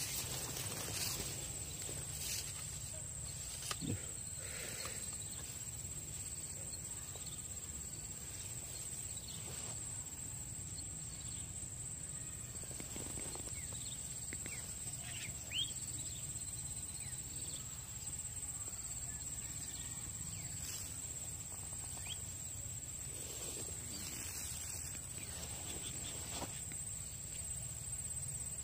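Insects droning steadily at one high pitch in tropical swamp vegetation, over a low background rumble, with a couple of faint knocks.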